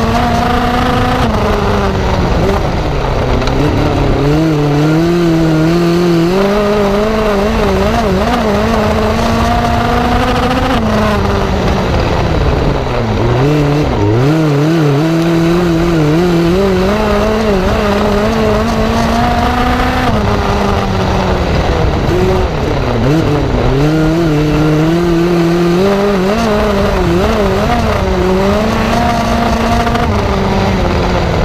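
Ecotec four-cylinder engine of a dirt-track midget race car at racing speed, heard from the cockpit. Its pitch climbs along each straight and falls off as the driver lifts for the turns, three times over.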